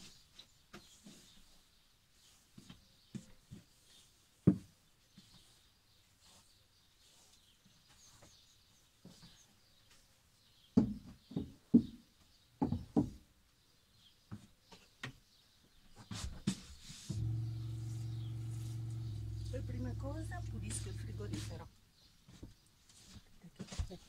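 Knocks and clatter of bottles and cleaning things being picked up and set down, with one sharp knock a few seconds in and a run of knocks about halfway. Near the end a steady low hum runs for about four seconds, then stops suddenly.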